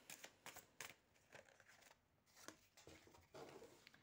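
Faint soft clicks and rustles of a tarot deck being shuffled by hand.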